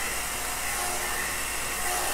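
Small electric heat gun (heat wand) running steadily, its fan blowing hot air with a faint whine over wet acrylic paint to raise cells.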